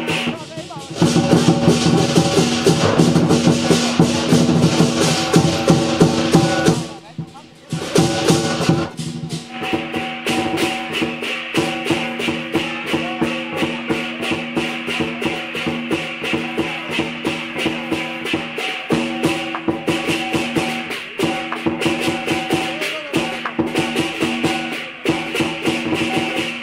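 Music with a fast, steady percussion beat over sustained melody tones. It drops away briefly about seven seconds in, then resumes.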